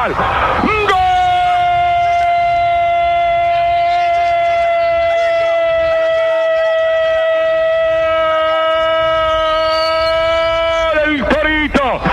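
Radio football commentator's goal cry: one long shouted "gol" held on a single high, steady note for about ten seconds after a short noisy start. It breaks back into rapid speech near the end.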